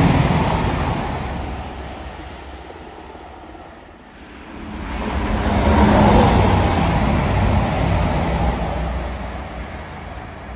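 Two passenger trains passing through the station at speed, one after the other. The first fades away over the first few seconds; the second rises to a peak about six seconds in and then fades as it runs off into the distance.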